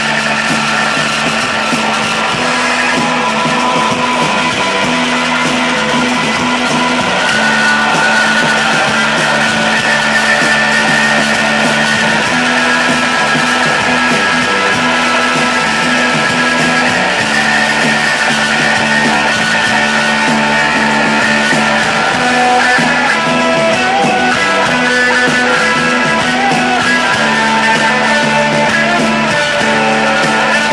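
Psychedelic rock band playing live with electric guitars, drums and a low note that pulses on and off underneath, loud and continuous.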